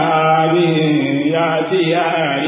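A man's voice chanting in a drawn-out, melodic way, each pitch held long and sliding slowly into the next.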